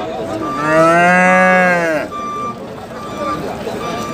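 A calf moos once: a single drawn-out call of about a second and a half, starting about half a second in, rising and then falling in pitch and stopping abruptly.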